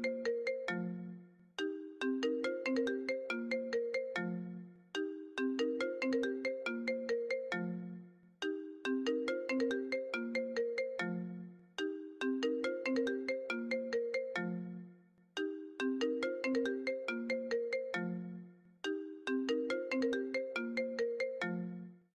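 A phone alarm ringtone playing a short, bright melody that starts over about every three and a half seconds, left to ring on without being switched off.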